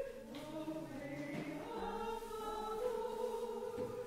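Congregation singing a recessional hymn in slow, held notes.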